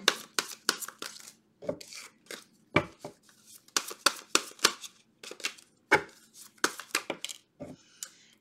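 A deck of tarot cards being shuffled by hand: quick, irregular snaps and slaps of the cards, two or three a second.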